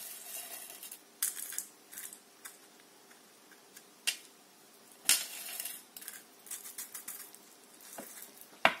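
Small decorative stones rattling against a tuna tin and scattering onto a cutting mat as the loose ones are tipped and pressed off the glued surface, in several short bursts with quieter gaps between.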